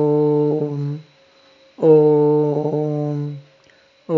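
A man chanting a bija (seed) mantra in long syllables, each held about a second and a half on one steady pitch with short breaths between. One held note ends about a second in, and the next runs from about two seconds in.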